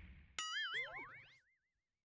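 Short logo sound effect: a tone that wobbles up and down in pitch, joined by quick rising glides, dying away within about a second. It is preceded by the last of fading applause, cut off abruptly.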